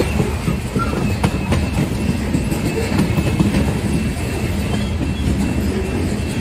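Covered hopper cars of a freight train rolling past close by: a steady low rumble of steel wheels on rail, with sharp clicks every second or so as wheels pass over rail joints and a faint thin high whine.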